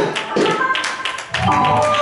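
Gospel singing with music, broken for about a second by a quick run of sharp percussive taps; the sustained singing voices come back near the end.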